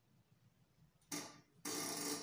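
A person snoring: a short snort about a second in, then a longer, raspy snore starting near the end.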